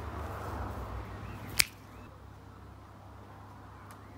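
A single sharp finger snap about one and a half seconds in, over faint background hiss that drops quieter right after it.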